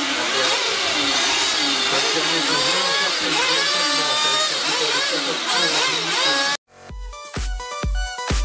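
Electric RC buggies' brushless motors whining, several at once, their pitch rising and falling as they speed up and slow down. They cut out suddenly near the end, and electronic dance music with a steady thumping beat starts.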